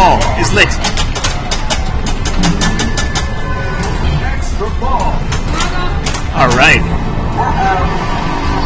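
Star Trek pinball machine in play: its soundtrack music and electronic sweeping sound effects, over rapid clicks and knocks from the flippers, solenoids and ball.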